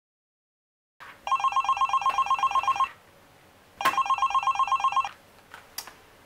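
Corded office desk telephone ringing: two rings of rapid warbling trill, starting about a second in, the second ring a little shorter. A couple of sharp clicks follow as the handset is lifted to answer.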